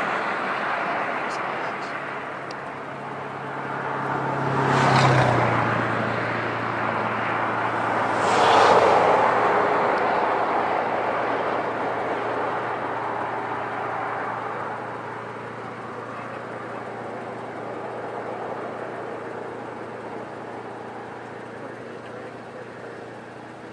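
Vehicle noise: a steady low engine hum, with two vehicles swelling past about five and nine seconds in, then fading slowly.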